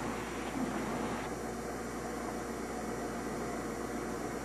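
Steady mechanical noise with a wet hiss from a water-cooled marble-cutting saw, its blade running under streams of cooling water. The higher part of the hiss drops away about a second in.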